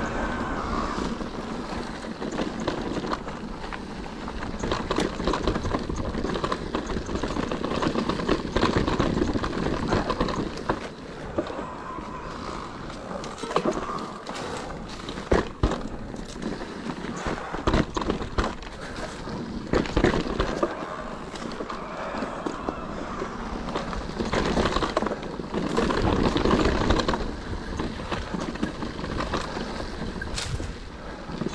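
Cube Stereo Hybrid 140 TM electric mountain bike ridden over a rough dirt and stone singletrack: steady tyre noise on the dirt, with frequent knocks and rattles from the bike as it goes over bumps and rocks.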